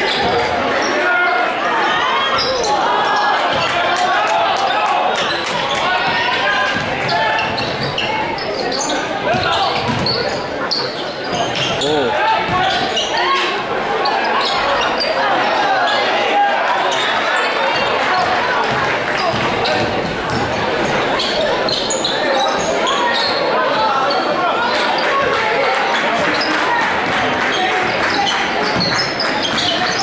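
Basketball dribbled on a hardwood gym floor, with many bounces, under the steady chatter of spectators, all echoing in a large gymnasium.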